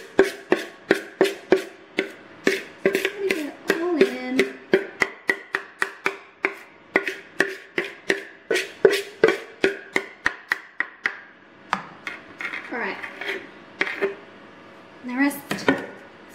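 A spoon scraping and knocking against the inside of a mixing bowl with cake batter, in sharp clicks about two to three a second that thin out after about eleven seconds. Near the end come a few brief vocal sounds.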